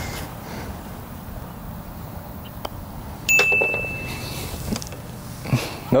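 A putter's light tap on a golf ball, then, about half a second later, the ball dropping into the hole's metal cup with a single clear ring that dies away in under a second. The holed putt makes a birdie.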